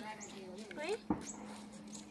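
A woman's voice calling a short "oi" to a dog, with one sharp click just after a second in.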